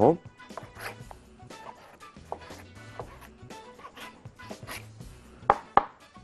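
Knife cutting raw chicken breast into cubes on a cutting board: irregular short knocks, about one a second, the two loudest near the end, over quiet background music.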